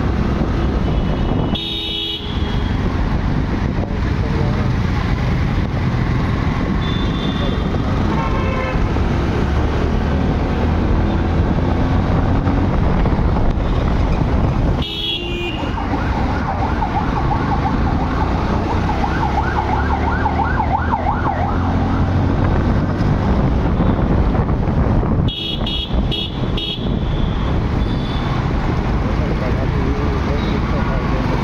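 Riding noise from a two-wheeler moving through city traffic: steady wind rumble on the microphone with passing vehicles, broken by a few brief horn toots.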